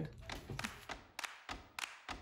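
Quiet background broken by several light taps or knocks in the second half.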